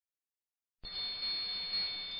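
Silence, then just under a second in a faint, steady high-pitched tone comes in over a low hiss: the lead-in of the music track before the song starts.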